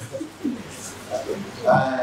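A bird calling in a few short, low notes, with a man's spoken syllable near the end.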